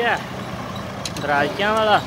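Farm tractor engine running steadily as the tractor drives along, with a man's voice calling out near the end.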